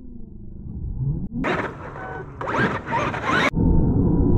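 Traxxas X-Maxx RC truck's brushless electric motor and drivetrain whining, rising and falling in pitch, in two sharply cut bursts starting about a second and a half in, over a low rumble.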